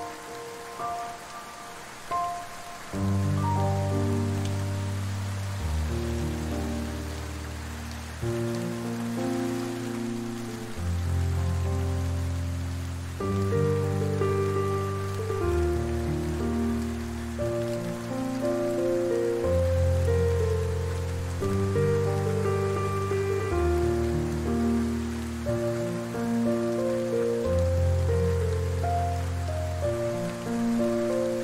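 Soft piano music over a steady rain sound; deeper notes join about three seconds in, and chords then change every couple of seconds.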